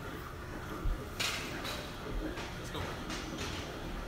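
Faint gym room noise with a low thump and then a sharp click about a second in, like metal gear being handled.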